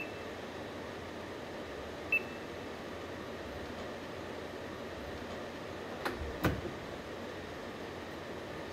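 Steady hum and hiss of a factory assembly hall, with one short high electronic beep about two seconds in and two quick knocks around six seconds in.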